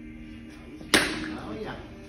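A softball bat striking a tossed softball: one sharp crack about a second in, ringing briefly after.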